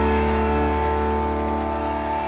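A live rock band's electric guitars and bass holding a sustained final chord that rings out and slowly fades at the end of a song.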